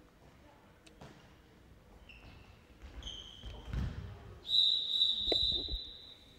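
Referee's whistle in a handball hall: two short blasts, then a long loud blast from about the middle on, calling a foul that draws a two-minute suspension. Low thuds of the ball and players on the court come in between.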